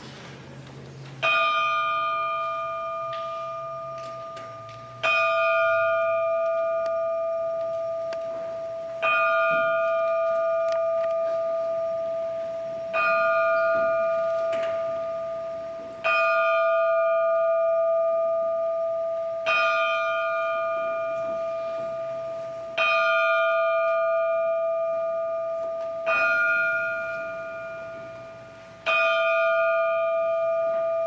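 A large brass bell hung in a floor stand, tolled slowly by hand: nine single strikes about three to four seconds apart, each ringing on and slowly fading before the next.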